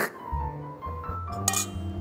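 Background music with steady low bass notes, and a metal fork clinking against a steel serving tray at the start and again about a second and a half in.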